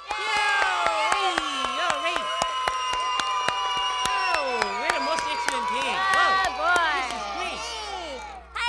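A group of young children cheering and shouting together while clapping their hands. It starts suddenly and eases off near the end.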